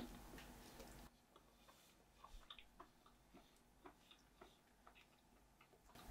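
Near silence, broken by a few faint, scattered clicks between about two and four seconds in: a person chewing a bite of smoked chuck-roast burnt end.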